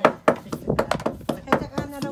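Quick, irregular knocks and taps, about five a second, from green bamboo tubes and a spoon being handled while the tubes are filled with sticky rice.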